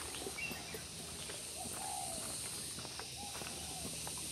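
A dove cooing: a few short, low, arching notes among other faint bird calls, over a steady high hiss and scattered light ticks.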